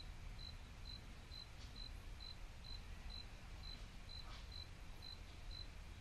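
Quiet room tone with a faint cricket chirping in an even rhythm, a short high chirp a little over twice a second.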